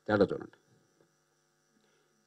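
A brief spoken word at the start, then a pause filled only by a faint, steady electrical hum.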